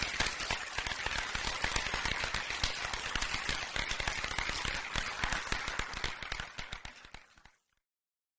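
Audience applauding in an auditorium: many hands clapping in a dense patter that fades away about seven seconds in.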